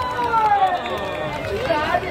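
Crowd of spectators talking and calling out, with many voices overlapping, some of them high-pitched.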